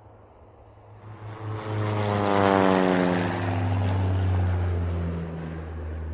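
An aircraft fly-by sound effect. A low engine drone swells in about a second in, and its pitch falls steadily as it passes, then it eases off.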